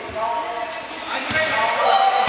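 Players' voices calling out across a large indoor sports hall, with a sharp ball thump about a second and a half in.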